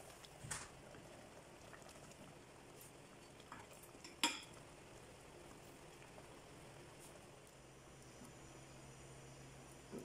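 Faint stirring of simmering curry in a stainless steel pot, with a few light clinks of the utensil against the metal, the sharpest a little past four seconds in.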